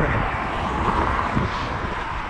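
Steady rushing noise of road traffic passing close by, swelling and easing through the middle, picked up by a hand-held camera carried at a run.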